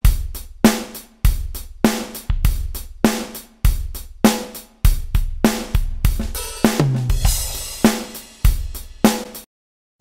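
A recorded drum-kit groove of kick, snare, hi-hat and cymbals playing back in a steady beat, a hit about every 0.6 seconds, with a cymbal wash about seven seconds in. It is a blend of a dry drum track and a compressed parallel bus whose balance is being shifted, and the playback stops shortly before the end.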